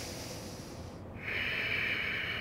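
A man breathing audibly through the nose: a soft hiss for the first second, then a louder, steady nasal breath from about a second in, a deep yogic breath taken on the cue for one more full breath in.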